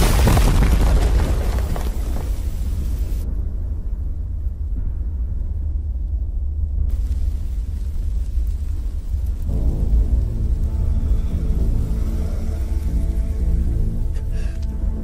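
Film soundtrack: a loud boom fades over the first couple of seconds over a deep, steady rumble. Music with sustained notes comes in about two-thirds of the way through.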